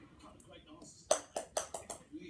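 A small ball bouncing on a hard floor: about five quick bounces starting about a second in, coming closer together as they die out.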